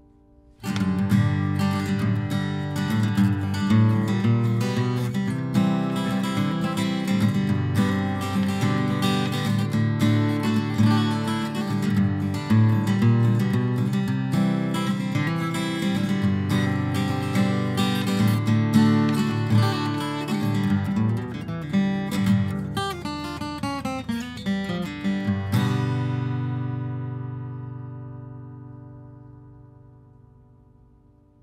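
Orangewood Oliver acoustic guitar, all mahogany with a solid mahogany top, played solo: a piece starts about a second in and goes on with many notes. A few seconds before the end it stops, and the last chord rings and fades away.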